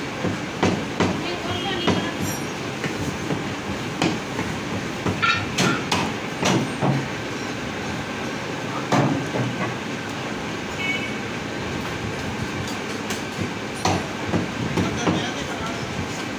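Heavy meat cleaver chopping mutton on a wooden stump block: irregular hard chops, a few close together and then spaced apart, over a steady background din.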